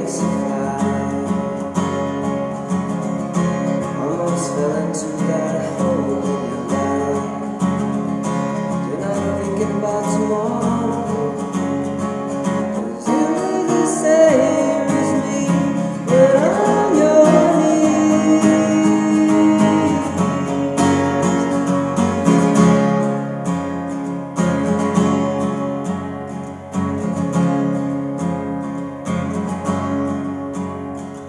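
Steel-string acoustic guitar with a capo, strummed steadily through the verse chord progression: C, Fmaj7 add9, Dm, G, Am. It gets somewhat louder about halfway through.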